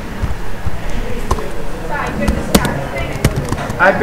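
Computer keyboard keystrokes: a handful of separate sharp clicks, the loudest about two and a half seconds in, over a low murmur of background voices.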